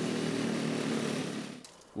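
Small engine of a motorcycle-built coffee-raking rig running steadily as it is driven through drying coffee beans, fading out about a second and a half in.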